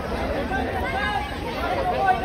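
A dense crowd of many people talking at once, voices overlapping into a steady chatter.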